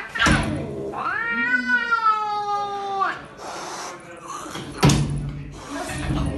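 A cat's single long, drawn-out meow lasting about two seconds, rising and then easing down in pitch. A sharp knock comes just before it, and another near the end.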